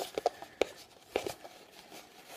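A printed cardboard collection box being handled and turned in the hand, giving a handful of light taps and knocks.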